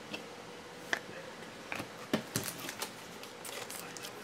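Trading cards and clear plastic card holders being handled, with scattered light clicks and short rustles.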